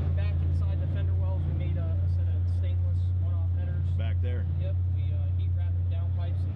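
A loud, steady low hum runs unbroken throughout, under voices talking in the background.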